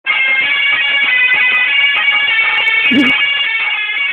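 Music on a reedy wind instrument: several steady, held notes sounding together like a drone, with a thin, narrow sound.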